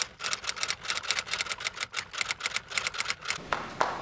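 Typewriter keys clacking in a quick, even run of about six or seven strokes a second, used as a sound effect under a title card. The typing stops about three and a half seconds in.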